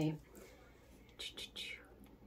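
The last of a woman's spoken word, then two short, faint breathy hisses about a second in.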